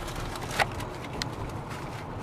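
Steady road and engine rumble inside a moving car's cabin, with one sharp snap about half a second in and a few fainter clicks.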